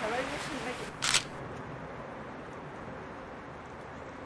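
Faint voices of people outdoors, then about a second in a single short, sharp hiss, followed by a low steady background hiss.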